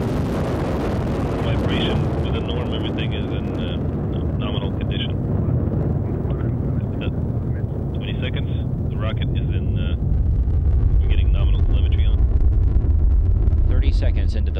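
Soyuz rocket's first-stage engines (four strap-on boosters and core engine) firing during ascent: a deep, steady rumble that grows louder about ten seconds in.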